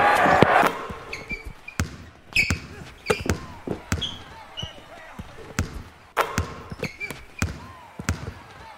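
Basketball dribbled on a hardwood court: a run of sharp, irregular bounces, with short high squeaks of sneakers on the floor between them. A burst of voices sounds in the first moment and then stops.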